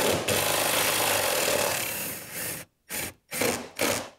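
Milwaukee cordless drill running a bit into the trolling-motor mounting holes. It runs steadily for about two and a half seconds and eases off, then gives three short bursts near the end.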